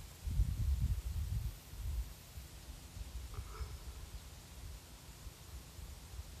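Wind buffeting the microphone in low, gusty rumbles, strongest in the first second and a half.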